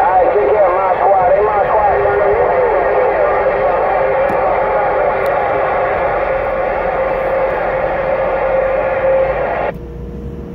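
Distant skip stations heard through a Uniden Grant XL radio's speaker on 27.025 MHz: garbled, warbling voices over static, with a steady whistling tone underneath. It cuts off suddenly near the end as the radio switches to transmit.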